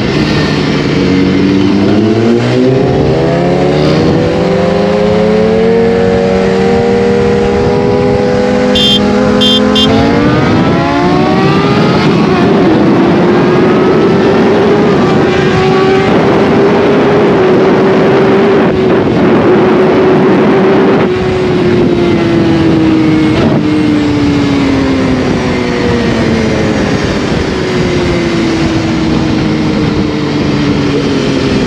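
BMW S1000RR inline-four with a full Akrapovič exhaust under hard acceleration. The engine note climbs through the gears over the first dozen seconds, holds a steady high pitch for about ten seconds, then falls slowly as the throttle eases off. A steady rush of wind runs underneath.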